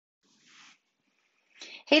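A faint short breath about half a second in, then a louder intake of breath about a second and a half in, just before a woman begins speaking.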